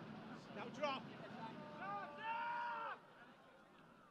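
Outdoor soccer-match ambience: a low crowd murmur with a short shout just before a second in, then a long drawn-out shouted call from about two to three seconds.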